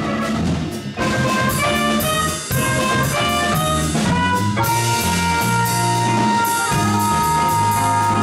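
A small jazz combo playing: a horn melody over a moving bass line and drum kit with cymbals. Midway the horn holds one long note for a couple of seconds.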